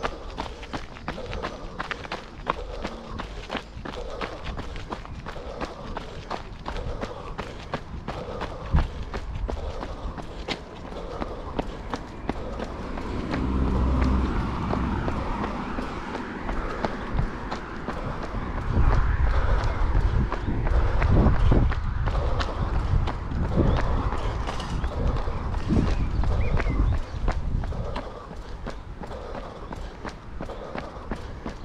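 Steady running footsteps of a jogger, first on gravel and then on paving, with the runner's breathing. Louder low rumbles of road traffic pass about halfway through and again in the second half.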